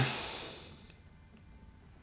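A breathy hiss of a person's exhale trailing off within the first second, then near quiet.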